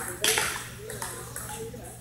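A sharp click of a table tennis ball, loudest about a quarter second in, with a reverberant tail, over background voices.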